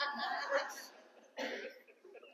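Faint reaction from a small congregation: quiet laughter and a cough that die away within the first second, then one short burst more.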